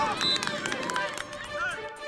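Voices shouting from the sideline of an outdoor field, over faint music.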